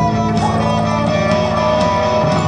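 Live band playing electric guitar over bass, with held notes and a steady low line, at full stage volume.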